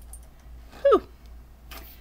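Steady low electrical hum, with one brief voiced sound sliding steeply down in pitch about a second in.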